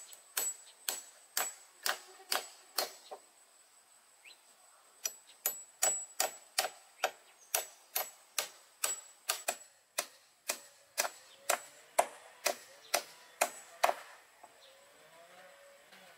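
Hammer driving a nail into a wooden board, steady strikes about two a second. The hammering stops briefly about three seconds in, resumes, and ends shortly before the close.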